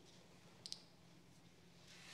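Near silence: room tone with a faint steady hum and one brief, faint double click about two-thirds of a second in.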